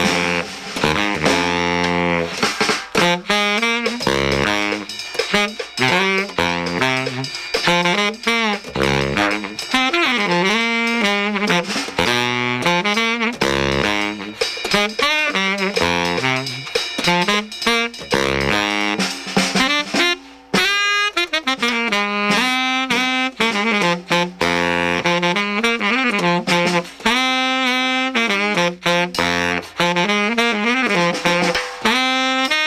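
Baritone saxophone playing a fast, moving jazz line over a drum kit, with drum and cymbal strikes throughout and one brief break in the line about two-thirds of the way through.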